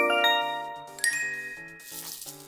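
Bright chiming jingle of an animated transition: a cluster of ringing bell-like notes fades out, then a second chime rings about a second in, over soft low musical notes.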